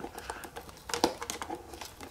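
Paperboard retail box being pried open by hand at its tuck flap: faint crinkling and small scattered clicks of the cardboard, a few sharper ones around the middle.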